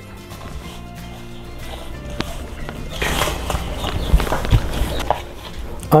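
Background music, with the soft squishing and dull thuds of hands kneading cornmeal dough in an aluminium bowl, louder from about three seconds in.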